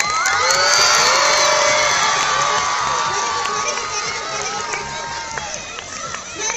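Crowd of schoolchildren cheering and shouting, rising suddenly, loudest about a second in, then slowly dying down.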